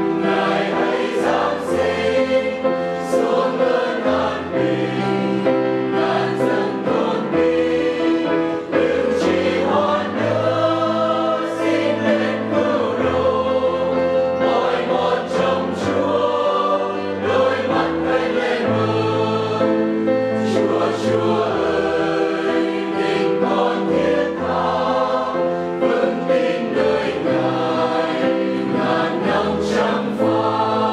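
Mixed choir of men and women singing a Vietnamese hymn.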